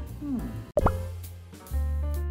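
Background music with a short editing sound effect about three-quarters of a second in: the music drops out for an instant, then comes a quick upward-sweeping blip.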